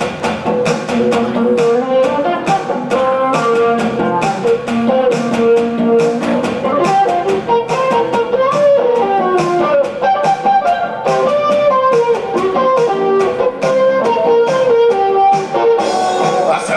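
Chapman Stick played live as a solo instrumental blues: a quick, steady run of tapped notes with a melody line moving over a repeated low figure.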